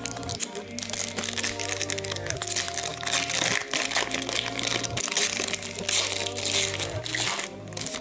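Foil wrapper of an Upper Deck Series One hockey card pack crinkling as it is torn open by hand, with steady background music underneath.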